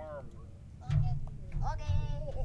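Casual talking voices, with a dull low thump about a second in.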